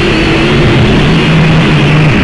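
A car engine running with a steady low hum, under a loud, dense noise.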